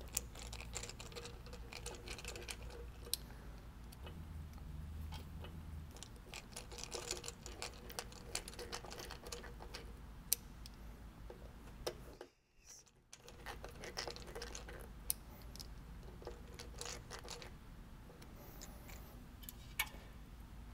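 Hand screwdriver turning small screws into a fuel-injection throttle body to mount a sensor: faint, irregular metallic clicks and ticks over a low steady hum.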